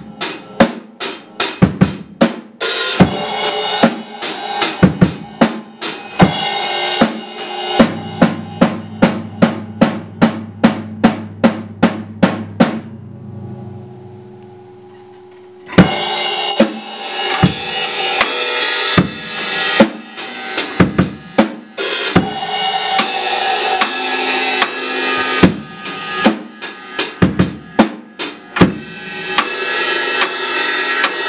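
Rock drum kit playing a driving beat of bass drum, snare and cymbal crashes. About halfway through, the drums stop for two or three seconds, leaving only a low held tone fading away, then come back in with a loud hit.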